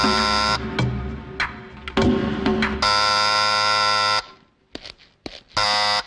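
Electric calling-bell buzzer sounding three times as its wall switch is pressed: a short buzz at the start, a longer buzz of over a second near the middle, and a brief buzz at the end.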